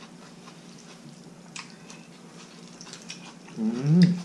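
Quiet eating at a table: a steady low hum, a few faint clicks of utensils on a bowl, and, a little before the end, a short 'mm' from a person that rises in pitch.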